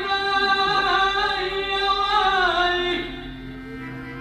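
A Pashto noha, a Shia lament, sung by a solo voice with instrumental accompaniment. The voice holds a long note that sinks in pitch about two and a half seconds in, and the music drops to a quieter, steady held tone near the end.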